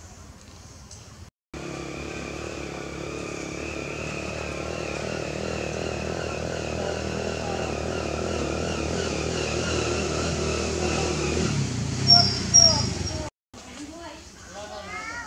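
A motor engine running steadily and slowly getting louder, with two short, loud, high-pitched squeals near the end before the sound cuts off suddenly.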